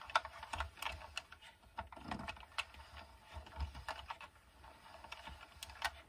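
Faint, irregular plastic clicking from the needles of a 22-pin circular knitting machine as yarn is wrapped by hand around each needle while casting on.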